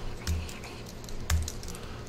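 A few scattered keystrokes on a computer keyboard, with two firmer presses about a second apart.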